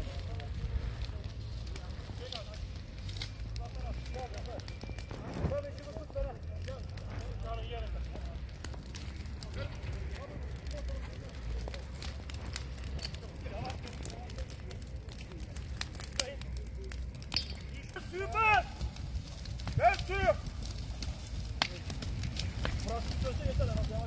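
Dry grass and reeds burning, with scattered sharp crackles over a steady low rumble. Voices call out briefly about three-quarters of the way through.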